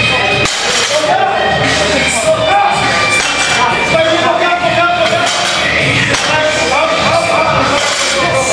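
Loud background music with a sung vocal line running steadily throughout.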